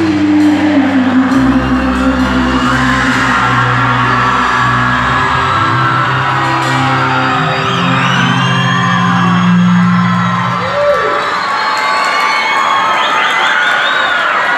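A live band holding long, steady closing notes in a large hall, the low notes dropping out about eleven seconds in as the song ends, while the crowd whoops and cheers.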